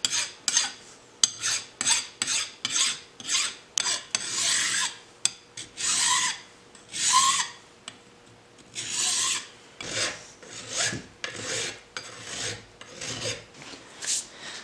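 Hand file rasping along the sharp steel edges of a pair of bolted-together tool squares, breaking the corners. It comes as a series of strokes, about two a second at first, then a few longer, slower strokes in the middle, then quick strokes again.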